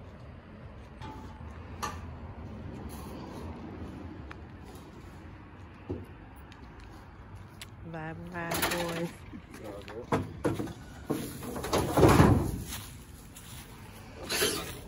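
Knocks and clatter from gear being handled at the open rear doors of a work van, with a brief stretch of voices about eight seconds in. The loudest sound is a heavy knock about twelve seconds in.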